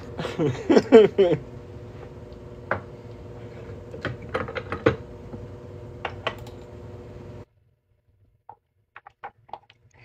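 A short laugh, then scattered light metal clinks and taps as steel die blocks are handled and set into a coin ring press, over a steady hum that cuts out about seven seconds in.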